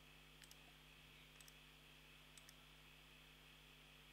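Faint computer mouse clicks, three quick double clicks about a second apart, over a steady low hum; otherwise near silence.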